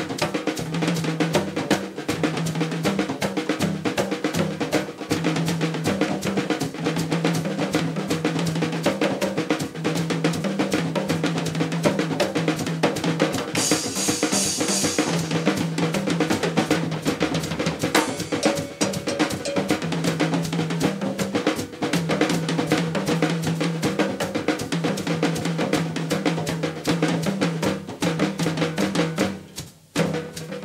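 A percussion ensemble playing Beninese rhythms on drums and cymbal: a fast, dense run of drum strokes over a repeating pitched low drum figure, with a cymbal wash about fourteen seconds in. The playing stops suddenly near the end.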